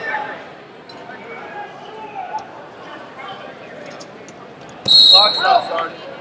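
Murmur of a large tournament hall, then about five seconds in a referee's whistle gives a short, loud, high blast over shouting voices, stopping the wrestling.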